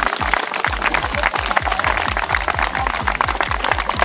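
Crowd of players and spectators applauding over background music with a steady, fast beat.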